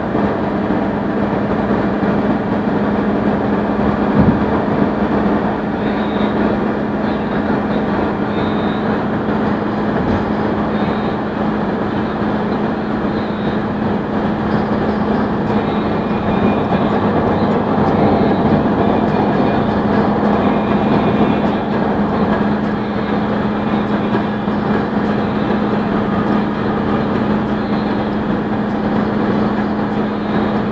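Steady road and engine noise inside a car cruising on a highway: constant tyre roar under a low, even drone, with a couple of brief thumps in the first ten seconds.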